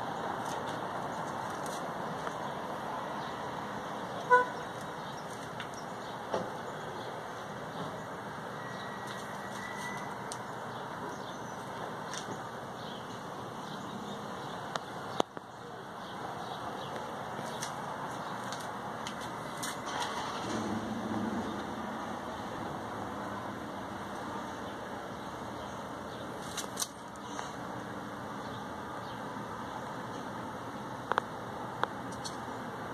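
Steady background traffic noise from a street below, with one short car horn toot about four seconds in.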